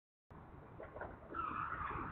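Cars driving through a roundabout. The sound starts suddenly about a third of a second in and gets louder about a second and a half in, with a wavering high note over low road rumble.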